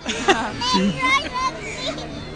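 Children's voices and chatter in a crowd, with high, wavering calls a little after the start.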